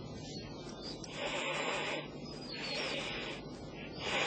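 Common ostrich hissing in threat: three breathy hisses of about a second each, the last starting near the end.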